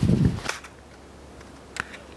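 Handling noise from a camera swung quickly by hand: a dull low thump and rumble right at the start, a sharp click about half a second in, and a smaller click near the end.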